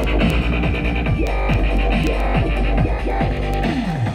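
Dubstep drop played through a Hifonics subwoofer in a carpeted box: a steady deep bass under repeated falling bass sweeps, two or three a second, with dense electronic sounds above.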